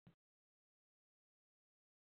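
Near silence: the recording's silent lead-in, with nothing audible.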